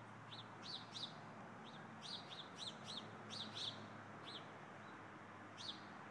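A small bird chirping: about a dozen short, high chirps in quick, uneven succession, then a pause and one more chirp near the end.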